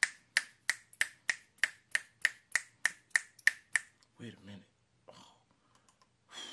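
A man snapping his fingers in a steady, even run of about thirteen sharp snaps, roughly three a second, stopping a little short of four seconds in.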